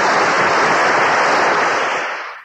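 Theatre audience applauding, a dense steady clatter of clapping that starts to fade near the end.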